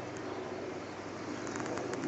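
Honeybees on an open hive frame buzzing: a steady hum from a frame crowded with bees.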